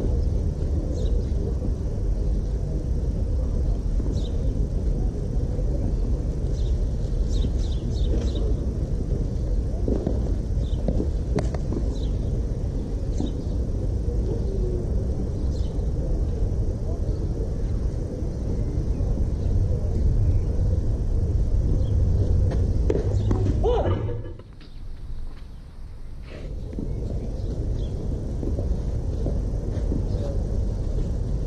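Steady low rumble of outdoor ambience on an open tennis court between points, with a few faint light knocks. It drops away sharply for about two seconds near the end, then returns.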